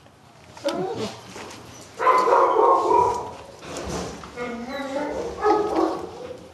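A dog whining and vocalizing in three drawn-out bouts that glide up and down in pitch, the middle one the loudest. Close handling clicks come in between.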